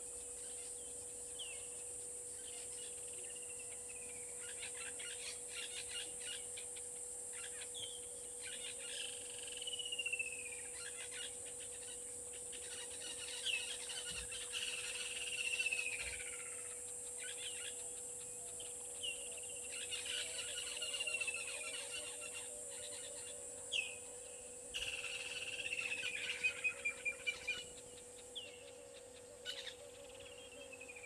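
A bird calling over and over with a falling whistled note, one every two to three seconds, over a steady high-pitched drone and a low steady hum.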